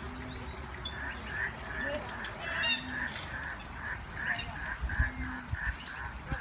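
An animal calling in a steady series of short, evenly spaced notes at one pitch, about two or three a second.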